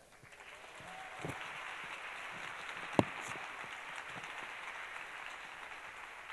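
Audience applauding steadily for an award winner, with one sharp knock about halfway through.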